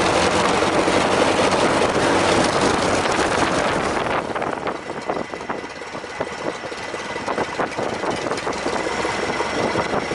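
The Stampe SV4B biplane's de Havilland Gipsy Major inverted four-cylinder engine running at high power during its pre-takeoff run-up, then throttled back to a quieter idle about four seconds in, where separate beats can be picked out.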